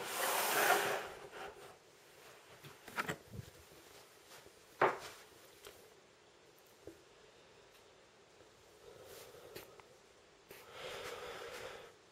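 Handling noise from a camcorder being moved by hand: a rustle at the start, a few light knocks with the sharpest about five seconds in, and another rustle near the end.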